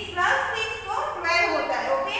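A woman speaking, explaining a lesson.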